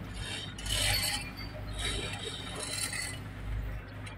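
Steady low engine hum with metallic rattling and clinking that comes and goes about once a second, from machinery at a ferry's vehicle ramp during unloading.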